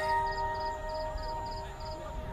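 Soft background music of sustained held notes that fade slowly, with a faint high pulse repeating about three times a second.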